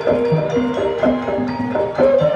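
Traditional Javanese music accompanying a kuda lumping (jaran kepang) dance: pitched percussion plays a quick, repeating pattern of short notes over low drum notes.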